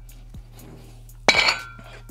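A single sharp metallic clink, ringing briefly, a little past the middle: iron dumbbells knocking as they are set down at the end of a set of curls. A faint click comes shortly before it.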